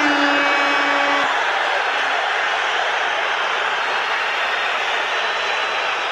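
A steady, loud rushing noise laid over an end title card, opening with a pitched tone that drops in pitch and holds for about a second before giving way to the plain noise.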